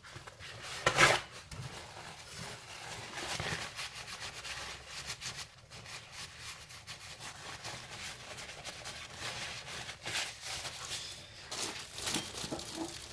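Paper towel rubbing over a greasy rear wheel hub, wiping off excess grease in a steady run of dry, irregular rubbing. A brief louder noise comes about a second in.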